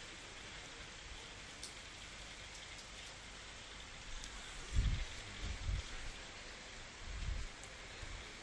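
Faint steady hiss of room noise, with a few low dull thumps about five seconds in and again near the end.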